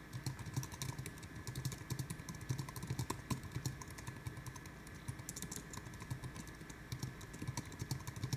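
Typing on a computer keyboard: a steady run of quick, irregular key clicks as a sentence is typed, fairly faint.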